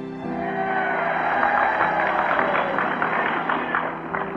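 A large crowd applauding, a dense spatter of clapping that starts about a quarter second in and carries on steadily, heard in an old speech recording. Soft background music plays underneath.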